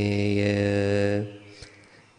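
A male Buddhist monk's voice chanting a Sinhala meditation recitation in a steady monotone. He holds the last syllable on one pitch for about a second, then stops.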